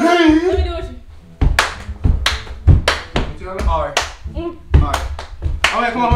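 Young people's voices in a room, broken by a string of irregular sharp smacks like hand claps or slaps, the loudest a little before the middle.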